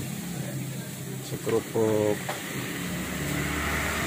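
A brief snatch of a person's voice about one and a half to two seconds in, over a steady low background hum, with a couple of faint clicks.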